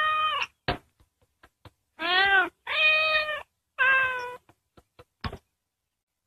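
Cartoon cats meowing: four long, drawn-out meows, the first already under way, then three more in close succession between about two and four and a half seconds in, with a few faint clicks between them.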